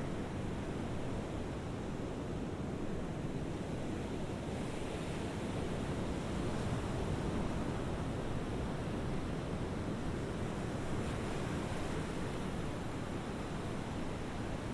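Open-sea ambience: waves washing on the water as a continuous, even rush, swelling slightly a few times.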